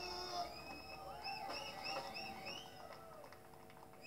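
Live band music, growing quieter, with a run of short high tones that rise and fall, about six in a row.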